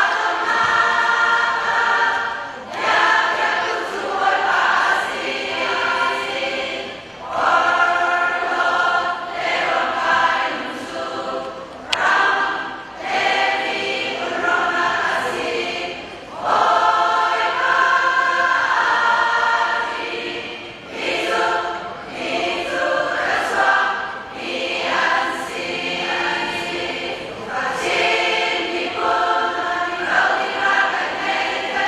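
A large women's choir singing together, in phrases a few seconds long with short breaks between them.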